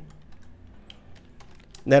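Typing on a computer keyboard: a quick run of light, faint key clicks as a short word is typed.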